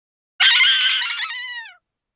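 A single high-pitched shriek that breaks in suddenly about half a second in, holds for over a second and slides down in pitch as it fades out.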